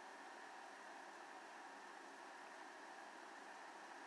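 Near silence: steady faint hiss of room tone.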